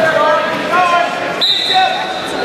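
Indistinct shouting from coaches and spectators echoing in a gym during a wrestling match, several voices overlapping. A high, steady tone comes in about one and a half seconds in.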